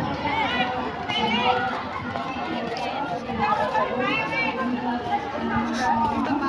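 Indistinct chatter of several people talking nearby, some voices high-pitched.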